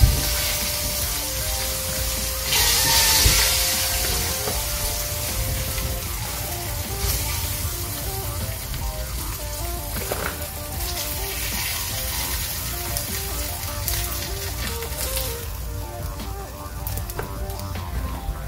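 Background music with a simple stepping melody over barracuda pieces frying in oil in a skillet, a steady sizzle. The sizzle flares louder for about a second, about two and a half seconds in.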